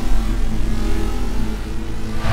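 Intro logo sting: a steady, deep bass rumble with several held tones over it.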